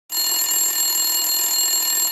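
An electric bell ringing steadily without a break.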